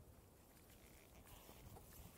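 Near silence: a faint low rumble with a few faint clicks.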